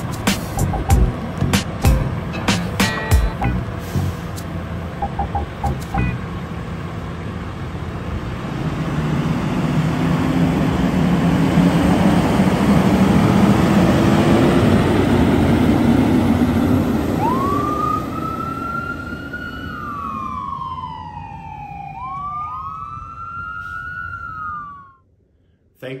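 Fire engine's diesel engine pulling away, swelling and rising slowly in pitch, followed by its electronic siren wailing in a few rising and falling sweeps that cut off suddenly near the end.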